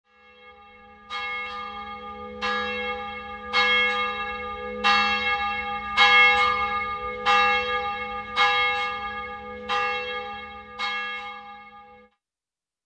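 A church bell tolling: about nine strikes a little over a second apart, each ringing on into the next. It cuts off suddenly at the end.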